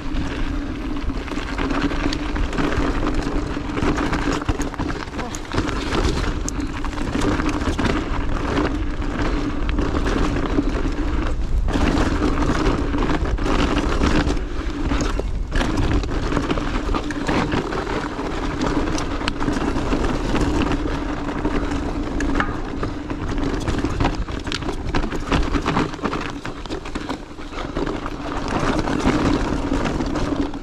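Chainless mountain bike coasting downhill on a rocky dirt trail: continuous wind noise on the rider's camera microphone with tyre rumble and frequent knocks and rattles from the bike over rough ground. A steady hum runs underneath and drops out briefly twice in the middle.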